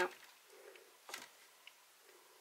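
A single light click about a second in, as a paintbrush is set down in a foil tray, followed by a fainter tick.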